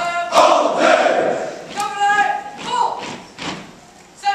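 Soldiers in formation shouting loudly together in unison, then a single voice calling out drawn-out shouted calls, with a thud about three and a half seconds in.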